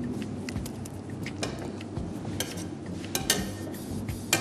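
A perforated metal spoon pressing and smoothing rice in a large pot, clinking several times against the pot in short sharp clicks, the loudest a little after three seconds in.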